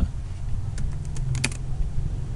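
Computer keyboard keystrokes: a handful of separate key clicks, with a quick few close together about one and a half seconds in, over a steady low hum.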